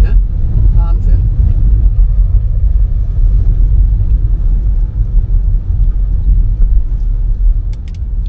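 Steady low rumble of a car driving on wet streets, heard from inside the cabin: engine and road noise.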